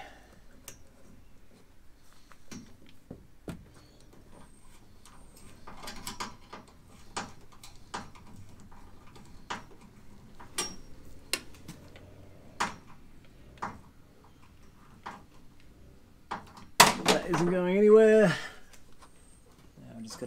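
Scattered light clicks and knocks of hands fitting and adjusting a tachometer's mounting clamp on a roll cage tube. About seventeen seconds in, a loud, wavering vocal sound from the man lasts over a second.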